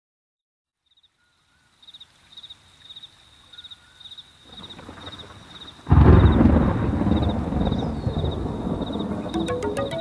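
Rain and storm ambience fading in, then a sudden loud thunderclap about six seconds in that rumbles on and slowly dies away. Near the end a chillout track with a steady beat starts over it.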